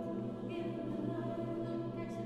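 Mixed chamber choir singing a sustained, held chord, with a higher voice line coming in about half a second in.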